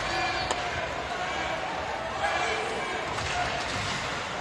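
Ice hockey arena sound from the stands: people talking and a crowd murmur, with a few sharp clacks of sticks and puck on the ice, one about half a second in.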